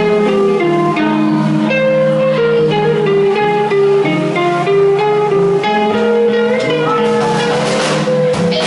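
Live electric guitar playing a melodic line of quick single notes over a held low note, with a bent note near the end.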